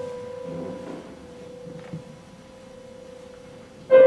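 A single struck musical note near 500 Hz rings on and slowly fades. The same note is struck again sharply right at the end.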